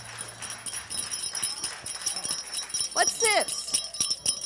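Audience clapping just after a live jazz number ends, a dense patter of many hands. About three seconds in, a person lets out a short, high cheer that glides up and down.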